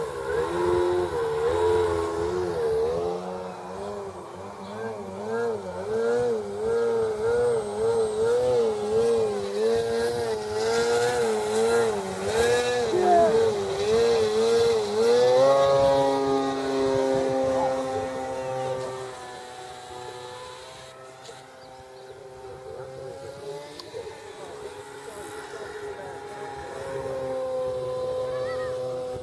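Electric motor and propeller of a radio-controlled model airplane in flight, a buzzing whine whose pitch wavers up and down about once a second for the first half. It then runs steadier and steps in pitch with throttle changes, going quieter for a few seconds before rising again near the end.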